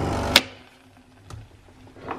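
Nescafé Dolce Gusto capsule machine's pump buzzing steadily as it dispenses the milk capsule, then stopping abruptly with a click about a third of a second in. A soft knock follows about a second later.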